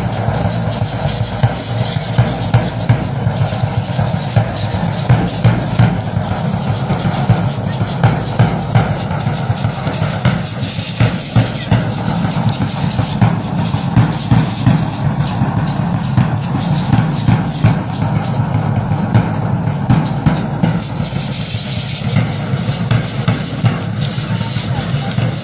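Drum music for a danza de pluma (Mexican feather dance), a steady beat pulsing evenly throughout.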